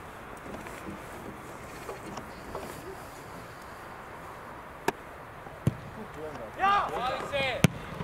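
Open-air football pitch background with a few sharp knocks of a football being kicked, the first about five seconds in as the goalkeeper takes a goal kick. Near the end comes a loud shouted call from a player.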